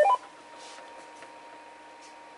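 A short, loud burst of electronic beep tones comes through the Yaesu FT-991A transceiver's speaker as the transmission ends. It is the repeater's courtesy tone, showing that the 88.5 Hz encode tone has opened the repeater. After it comes a faint, steady whine.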